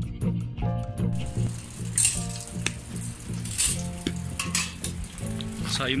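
Wood fire crackling and hissing in the firebox of a camping samovar-style tea stove, with sharp pops now and then. It starts about a second in, over background music.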